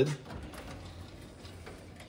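Metal storage-cabinet drawer loaded with brass fittings being pulled open, sliding out steadily for about a second and a half.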